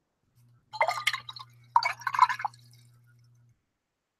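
Paintbrush swished in a jar of rinse water, in two short bursts, washing orange watercolor paint out of the bristles.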